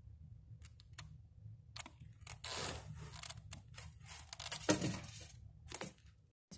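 Handling noise around a plastic egg tub: a few sharp clicks about a second in, then a longer rustling scrape from about two to three seconds and more scattered clicks, over a steady low hum.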